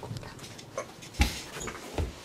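A single dull thump about a second in, amid light rustling and handling noises.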